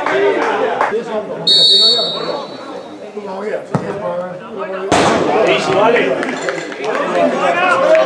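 Referee's whistle: one short, shrill, steady blast about a second and a half in, over the shouts of players and spectators. A sharp thump follows about five seconds in.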